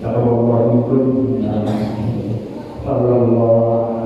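A man's voice chanting a prayer in long, steady held notes, with a short break about two and a half seconds in before the chant resumes.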